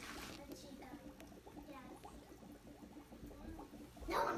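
Faint voices talking in the background over a low, steady room hum, with a few small clicks.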